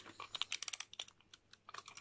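A run of faint, quick light clicks from a timer being set for ten minutes.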